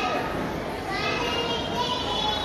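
A young boy's voice reciting into a microphone, heard over the hall's public-address system.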